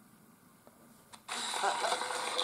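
Near silence, then a faint click, and just over a second in the sound of a TV broadcast cuts in suddenly from the smartphone as a channel starts to play.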